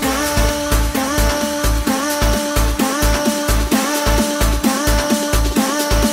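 Big-room electro house club remix: a steady four-on-the-floor kick drum at about two beats a second under held synth notes that scoop up into each note.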